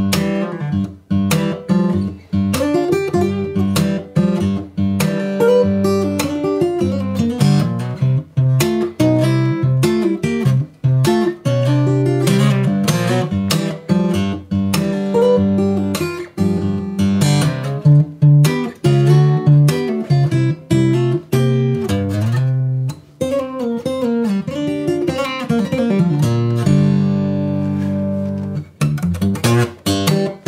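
Martin J-40 acoustic guitar in open G tuning played fingerstyle blues with a thumbpick: a boom-chick alternating bass and melody runs, mixed with many sharp percussive clicks on the strings. Near the end a chord is left to ring out and fade before a few last notes.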